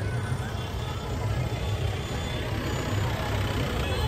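Busy street noise: a steady low rumble of traffic with a faint murmur of crowd voices.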